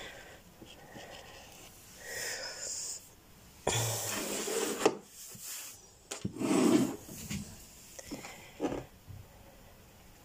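A person's breathing close to the microphone, in several breathy bursts with soft rubbing and handling noises between them.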